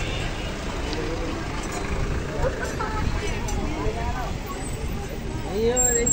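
Busy street sounds: nearby people talking over a steady low rumble of road traffic.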